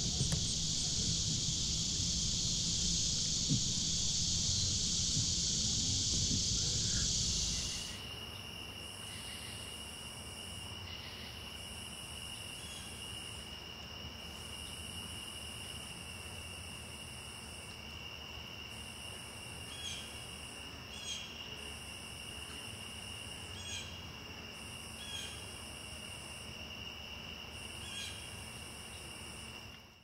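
Evening insect chorus: for the first eight seconds a dense, loud high-pitched buzz of insects over a low rumble, then it drops suddenly to a quieter steady high trill of crickets with repeating high buzzes about a second long and a few faint chirps.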